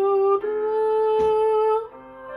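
A young woman singing solo, holding one note and then stepping up to a higher one that she sustains for over a second, rising slightly as it ends just before the close.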